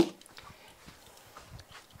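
Faint scattered clicks and soft knocks of a plastic-and-metal Beyblade spinning top being handled in the hands.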